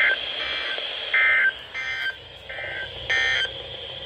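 A NOAA weather radio sends a rapid series of short two-tone digital data bursts over steady radio hiss: five bursts of about a third of a second each, a little over half a second apart. These are the SAME (Specific Area Message Encoding) end-of-message tones that close an Emergency Alert System broadcast.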